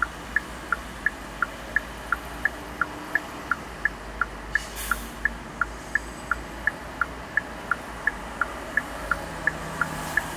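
A car's turn-signal indicator clicking in an even two-pitch tick-tock, about three clicks a second, over a low steady rumble of road and engine noise in the cabin.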